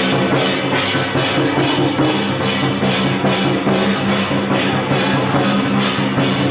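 Temple procession percussion troupe playing brass hand cymbals, a barrel drum and a gong on a steady beat of about two and a half strokes a second. Sustained pitched tones sound underneath.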